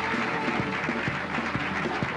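Live rock band playing an instrumental closing theme: electric guitar, keyboards and bass over a drum kit keeping a steady beat.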